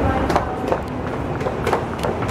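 Busy airport terminal hubbub with brief voices and laughter, and quick footsteps coming down a staircase.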